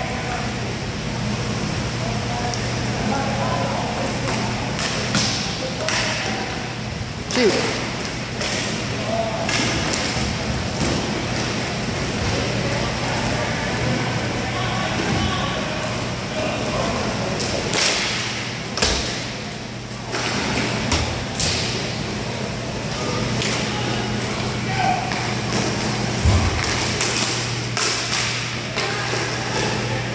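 Hockey game sounds in a large echoing hall: sticks and puck knocking against each other and the boards in scattered sharp hits, with players' voices calling out, over a steady low hum.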